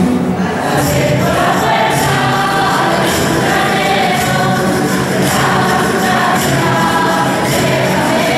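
A choir singing with musical accompaniment.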